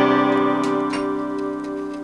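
Steel-string cutaway acoustic guitar's last chord ringing out and slowly fading, with a couple of faint clicks about halfway through.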